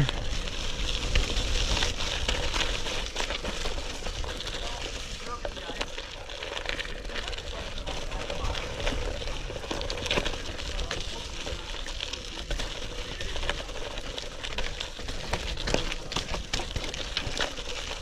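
Bicycle running on 32 mm gravel tyres over a dirt and gravel trail: a steady crackling crunch from the tyres, with frequent small clicks and rattles from the bike and a low rumble underneath.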